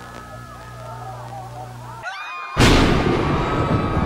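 A low steady hum, then after a short dropout a sudden loud boom about two and a half seconds in that fades into a dense, noisy rumble.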